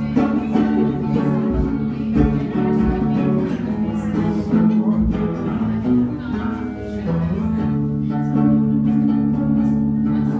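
A singer-songwriter's song on acoustic guitar, here in a stretch of guitar playing between sung lines.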